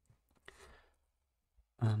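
A person exhaling in a faint, short sigh about half a second in, between spoken phrases.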